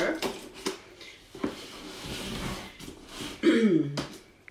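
Scissors cutting into the packing tape on a cardboard box: a few sharp snips and clicks, then a longer rasping slice through the tape. Near the end a short throat clearing.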